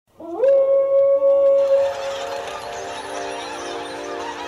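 Show intro: a long howl that slides up and holds one steady pitch for about a second and a half, then fades into a bed of sustained musical tones.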